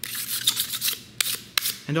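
A razor blade scraping across the surface of a homemade copper-clad circuit board, several short strokes with a couple of sharp clicks in the second half, cleaning off leftover copper strands and burrs from milling.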